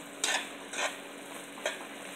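A spoon stirs whole Indian olives (jolpai) in a thick, sugary pickle syrup in a nonstick wok, giving three short scraping strokes over a low, steady sizzle.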